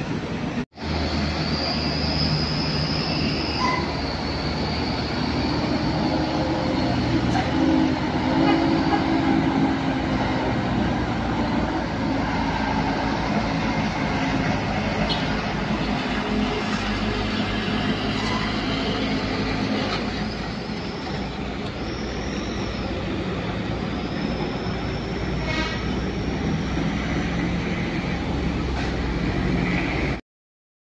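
Heavy diesel engine of a high-deck tour bus running as it swings round a tight hairpin bend, amid passing road traffic. Short high-pitched squeals come and go a few times.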